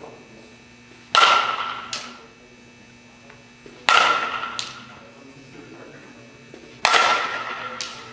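Softball bat hitting a softball three times, about three seconds apart, each hit a sharp ringing ping that fades over about a second, with a fainter knock following each one.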